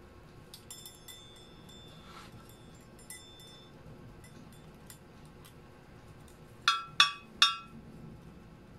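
Light ringing clinks of hard kitchen items, metal or glass: a few faint ones in the first seconds, then three sharp, loud ones in quick succession near the end.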